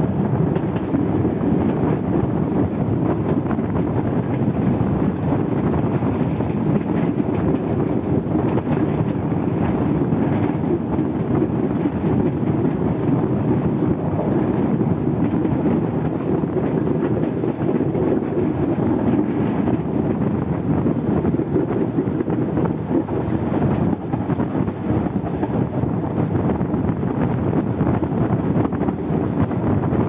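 Sri Lanka Railways T1 rail car running steadily along the track, a continuous rumble of the moving railcar heard from its open window.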